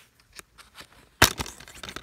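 A plastic DVD case being handled, with one sharp snap about a second in, followed by small clicks and rustling.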